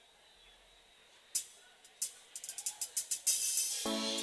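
A live band's drum kit counting in a song: two single sharp cymbal or hi-hat strokes, then a quickening run of strokes building into a sustained cymbal wash. The rest of the band comes in with held chords just before the end.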